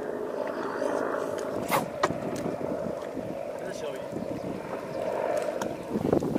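Water lapping and splashing against the hull of a small open fishing boat, a steady rough wash, with a couple of light knocks about two seconds in.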